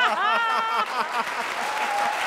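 Live studio audience applauding, with a raised voice over about the first second before the clapping carries on alone.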